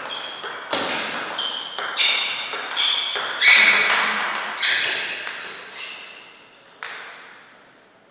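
Table tennis rally: the plastic ball clicks off the rubber bats and bounces on the table, about two hits a second, echoing in the hall. The rally ends with a last click about seven seconds in.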